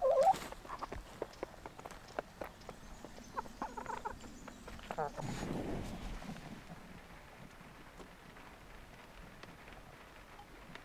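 Domestic hens clucking in short calls, a few times in the first half, among scattered small taps and scuffs. After about six seconds this gives way to a faint steady hiss.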